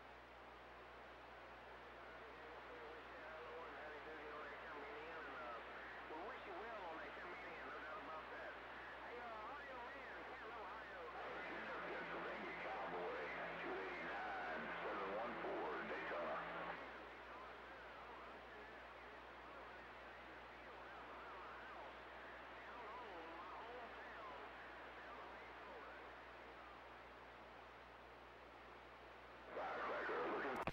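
Faint voice of a distant station coming through a two-way radio in a haze of static, too weak to make out. It is a little louder for several seconds around the middle. The signal is weak and rough: the station is barely readable.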